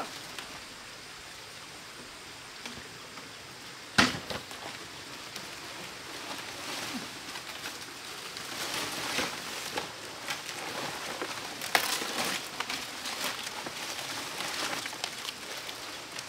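Large palm fronds rustling and crackling as they are handled and laid over a roof frame, denser in the second half. A sharp knock about four seconds in is the loudest sound, with a lighter one near twelve seconds.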